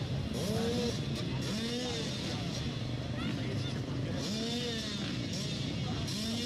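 Several off-road motorcycle engines idling on a start line, their revs rising and falling again and again as riders blip the throttles, with crowd voices mixed in.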